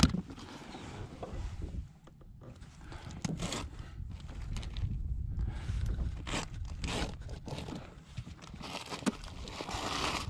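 Zipper of an insulated fish cooler bag being pulled open in several rasping strokes, with scraping and handling of the bag as a flounder is slid inside.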